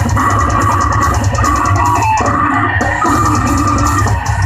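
A heavy metal band playing loud and live: electric guitar over bass and a drum kit, steady throughout.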